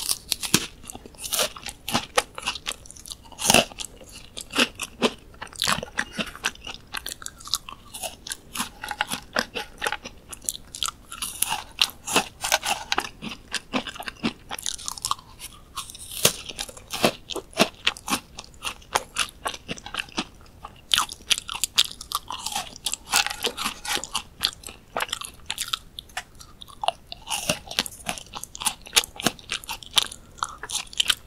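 Close-up crunching and chewing of crisp dried fruit chips: sharp bites snap through the chips, followed by rapid, dense crackling as they are chewed, with one especially loud crunch a few seconds in.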